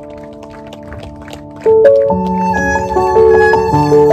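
Stagg electric violin played with the bow over a backing track. A soft accompaniment of held chords and light plucked notes comes first; about a second and a half in, the violin enters loudly with long held notes stepping up and down in pitch.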